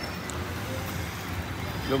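Steady road traffic noise.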